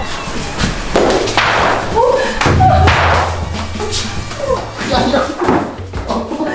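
Several thuds and slams from a person dancing hard on a studio floor, feet stomping and the body bumping into a wall, mixed with short exclamations and laughter.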